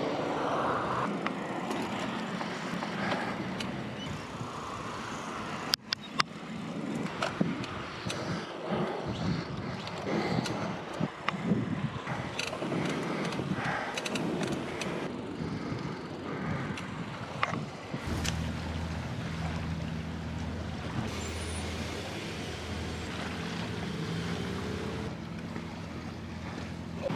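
Riding a bicycle along a path beside a road: a rushing noise of wind and traffic, with cars passing and sharp knocks and clicks from the ride, the loudest about six seconds in. About two-thirds of the way through it changes abruptly to a steady low hum.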